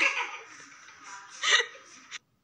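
A woman laughing, with a loud, breathy burst of laughter about one and a half seconds in.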